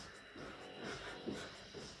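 Faint, soft sounds of a person doing star jumps in socks on a carpeted floor, with no clear speech.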